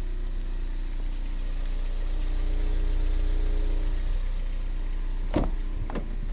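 A steady low mechanical hum with a faint droning tone that swells in the middle, then a single clunk about five seconds in as the Ford Escape's rear door is unlatched and swung open.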